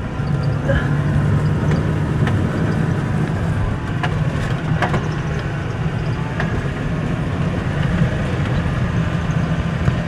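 Tractor engine running steadily while driving the muck spreader, heard from inside the cab. A few sharp ticks come as lumps of muck thrown by the spreader hit the cab.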